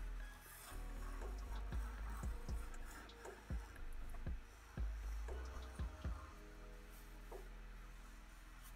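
Marker drawing on paper: quiet rubbing strokes with irregular soft knocks of the pen and hand on the drawing surface, over a low hum that stops about six seconds in.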